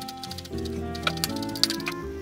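Kitchen knife chopping a seeded red chili finely on a wooden cutting board: a quick, uneven run of sharp taps, over background music.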